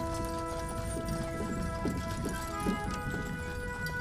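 Background music of held, sustained notes over the clip-clop of the caisson's horse team walking past.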